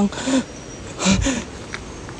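A man breathing hard in two breathy gusts, with a few short murmured sounds between them.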